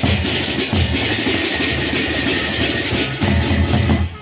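A Sasak gendang beleq ensemble playing traditional gamelan music: big double-headed barrel drums beaten with sticks in heavy, driving strokes, under a rapid, unbroken clashing of cymbals. The deep drum strokes drop out briefly in the middle, then return.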